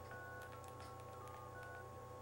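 Cell phone keypad beeping as its buttons are pressed: about five short, faint beeps at slightly different pitches, with faint key clicks.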